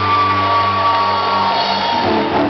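Live rock band, electric guitars holding a high sustained note over a ringing low chord that cuts off about one and a half seconds in, with crowd whoops.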